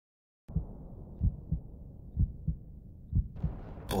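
Heartbeat sound effect opening a rock track: low double thumps, lub-dub, about once a second, starting about half a second in. A hiss rises near the end as a voice begins.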